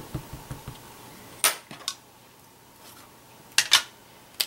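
Sharp clicks and taps of stamping supplies being handled on a tabletop, likely the rubber stamp set down and the rainbow ink pad moved away. There are a few light ticks at first, two clicks about a second and a half in, and a louder double click near the end.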